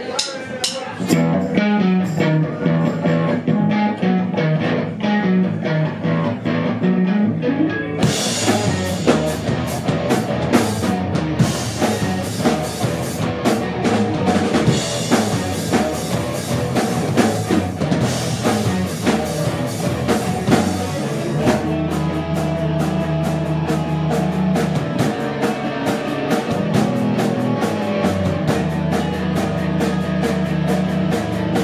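Live rock band with electric guitars and a drum kit playing a song. The opening seconds are lighter, without cymbals; about eight seconds in the cymbals come in and the full band plays on loudly.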